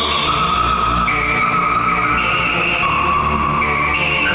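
Waldorf Quantum polyphonic synthesizer played in sustained chords: a dense pad with a hiss-like edge, the chord changing roughly every second.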